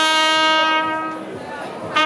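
Trumpet holding one long note that fades away about a second and a half in, with the next note entering just at the end.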